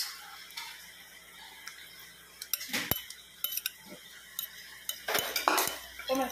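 Cutlery clinking and scraping against a plate during a meal: scattered short clicks, sparse at first, then a denser run of louder clinks about five seconds in.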